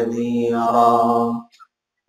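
A man's voice chanting Arabic in a slow melodic recitation, holding one long drawn-out note that breaks off about one and a half seconds in.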